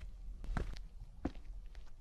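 Footsteps on a hard road surface, about three even steps over a low steady hum.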